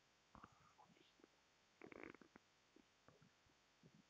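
Faint rubbing of a handheld duster wiped across a whiteboard in short, irregular strokes, the strongest cluster about two seconds in.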